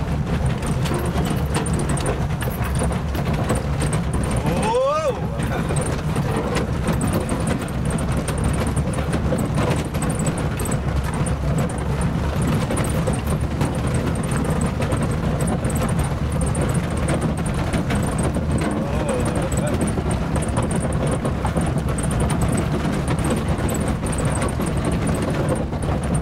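Lada Cossack (Niva) 4x4 driven over rough ground and heard from inside the cabin: a steady engine and drivetrain drone with continual knocks and rattles from the body. A brief rising tone sounds about five seconds in.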